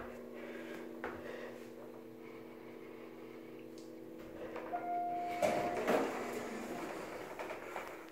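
Otis hydraulic elevator car travelling with a steady hum. About five seconds in, a single arrival chime rings and the hum stops, and the doors slide open with a rush of noise.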